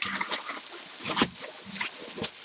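Tissue paper crinkling and rustling in short, irregular crackles as it is pulled back from a wrapped package.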